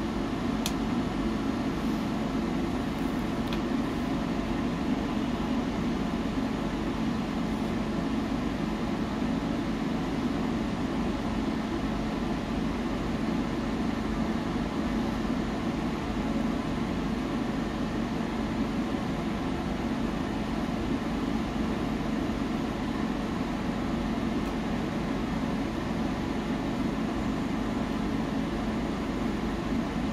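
Wood-burning stove running with a steady low rushing hum and a couple of faint ticks in the first few seconds.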